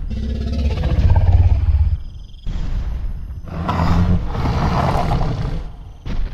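Two long, deep growling roars of a T-rex sound effect, the first ending about two seconds in and the second starting half a second later.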